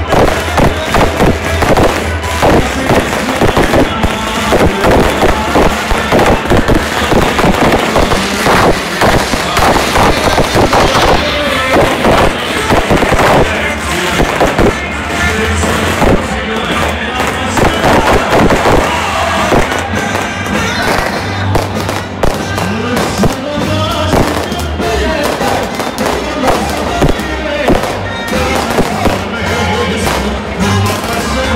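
Loud, distorted festival music played through the horn loudspeakers on a wooden giglio tower, over a crowd, with many sharp cracks and bangs all through.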